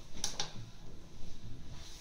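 Two light clicks close together from a fingertip pressing the button of a small digital kitchen scale.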